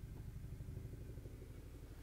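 Faint, steady low hum of room tone, with nothing else happening.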